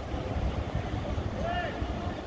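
Outdoor street ambience with a steady low rumble, and a brief faint distant voice calling out about one and a half seconds in.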